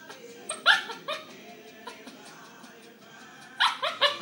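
Silkese puppies yipping along to music: a few short, high yips in the first second, a lull, then a quick run of yips just before the end.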